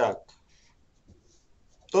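A man speaking in a small room: one word trailing off at the start, a pause of about a second and a half, then speech starting again near the end.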